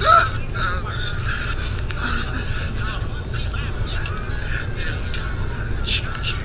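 Animated-film soundtrack playing from a TV speaker: a short loud vocal cry at the start, then quieter voice and music sounds over a steady low hum.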